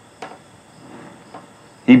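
Crickets chirring faintly and steadily, with a couple of soft clicks; a man's voice starts right at the end.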